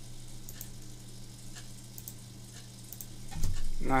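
Faint scattered clicks from a computer mouse and keyboard over a steady low electrical hum and hiss. A man's voice starts near the end.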